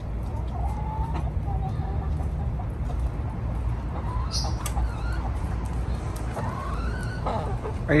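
Domestic hens clucking with a few faint wavering calls, over a steady low rumble. One call rises in pitch near the end.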